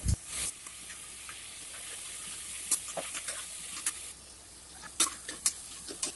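Chopped onions, green chillies and tomatoes sautéing in oil in an aluminium pressure cooker, sizzling steadily, while a metal ladle stirs them, clinking and scraping against the pot a few times. The sizzle eases after about four seconds.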